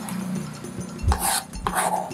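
Chef's knife chopping on a cutting board: two short strokes about half a second apart, a little after a second in, finely dicing red bell pepper, over a faint steady low hum.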